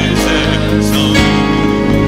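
Worship music: sustained, held chords from the band with some singing.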